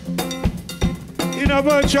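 Live band groove led by a cowbell struck with a drumstick in a steady rhythm over drums and bass. A singing voice comes in about one and a half seconds in.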